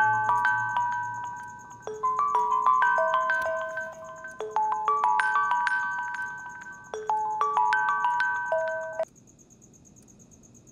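A smartphone ringing for an incoming call, its marimba-like ringtone melody repeating about every two and a half seconds. It cuts off suddenly about nine seconds in as the call is answered.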